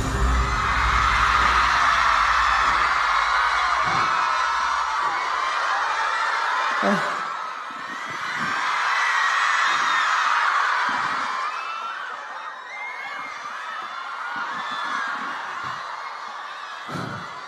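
A concert crowd of fans screaming and cheering as a song ends, a mass of high-pitched voices that dips about seven seconds in, swells again and fades toward the end. A low rumble from the end of the music dies away in the first few seconds.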